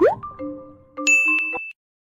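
Electronic intro jingle: a quick upward slide into a few held tones, then a bright, high ding about a second in. The sound cuts off abruptly near the end.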